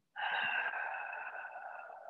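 A person's long audible breath out through the mouth, lasting about two seconds and fading away: an exhale during a mat Pilates leg exercise.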